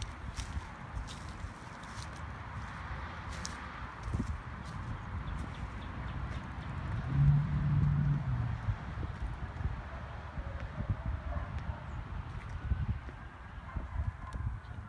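Footsteps on dry dirt, irregular and scattered, over a low rumble. A brief low hum comes about halfway through and is the loudest part.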